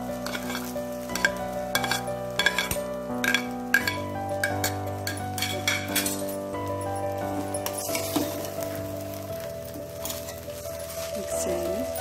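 Metal slotted spatula clinking and scraping against a stainless-steel kadai as noodles are stir-fried, with a sizzle of frying; the clinks come thickest in the first few seconds and again about two-thirds of the way in. Background music with sustained chords plays underneath.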